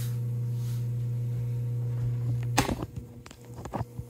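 A steady low electrical hum that drops sharply in level about two and a half seconds in. A few short knocks and rubs from the vinyl-covered panel and bench being handled follow.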